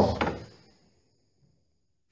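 A man's voice trailing off at the end of a phrase, then near silence: room tone.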